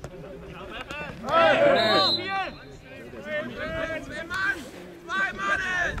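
Men's voices shouting and crying out on an amateur football pitch as a player is taken down in a tackle, loudest about a second and a half in, with further shouts near the end.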